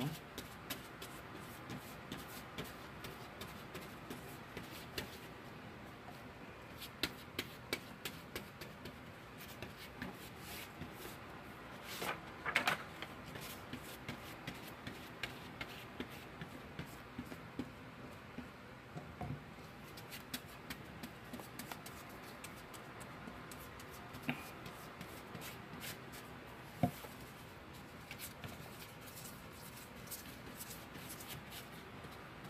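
A paintbrush spreading Mod Podge on cardboard: soft scratchy strokes and small taps. There is a longer scratchy rustle about twelve seconds in and a single sharp knock near the end.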